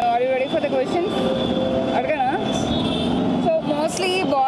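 Voices talking over the steady noise of road traffic running nearby.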